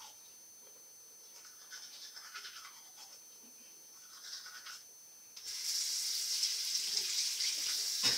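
Manual toothbrush scrubbing teeth, faint and scratchy. About five seconds in, a steady hiss of running water from a tap starts and carries on.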